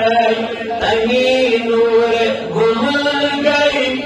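A man's solo voice chanting a Kashmiri naat unaccompanied, holding long melismatic notes that glide up and down in pitch.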